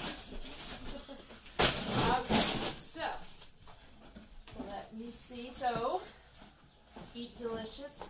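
Packing tape pulled off a cardboard box: one loud ripping tear lasting about a second, beginning between one and two seconds in. Cardboard rustling follows as the box is worked open, with short bits of a woman's voice between.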